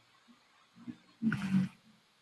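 One short, rough vocal noise from a person, lasting about half a second and starting a little past the middle; otherwise quiet room tone.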